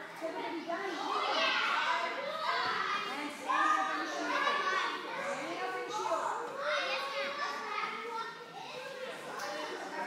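Many children's voices talking and calling out over one another at once, in the echo of a large hall.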